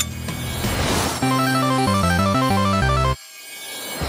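A rising swell of noise, then a short video-game-style synth jingle of quick stepping notes. The jingle cuts off abruptly about three seconds in, and a faint rising sweep follows.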